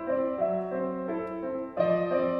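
Solo grand piano played live: a flowing line of notes over held bass tones, with a louder chord struck near the end.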